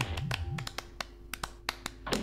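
A string of sharp, irregular clicks and taps over a faint steady hum, with a low pulsing tone dying away in the first half-second.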